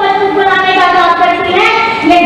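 A high voice singing long, held notes that glide slowly in pitch, with a change of note about one and a half seconds in.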